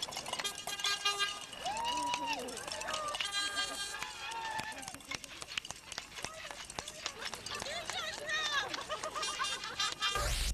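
Several people talking over one another in overlapping conversation, with small knocks and clicks scattered through it.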